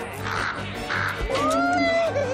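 Crow cawing twice, two harsh caws about half a second apart in the first second, over orchestral film music.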